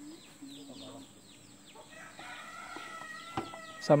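A rooster crowing faintly: one long, steady call of about two seconds in the second half, preceded by a run of short, falling bird chirps.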